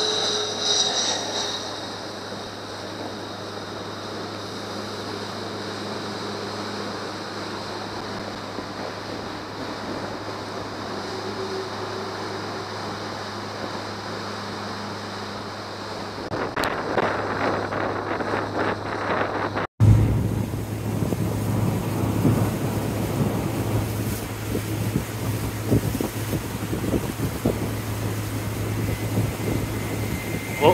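Small motorboat under way: a steady engine hum under rushing wind on the microphone and water splashing off the hull. A jet airliner's high whine passes overhead in the first second or so. About two-thirds through there is a sudden cut, after which the wind and water noise is louder and choppier.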